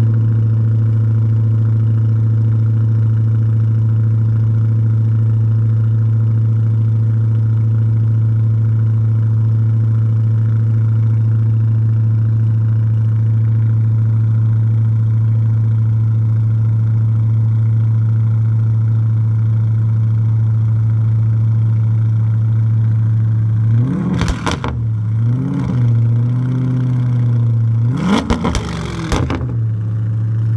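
Lotus-badged Opel Omega saloon's engine idling steadily through its exhaust. Near the end it is blipped twice, each rev rising and dropping back to idle within about a second.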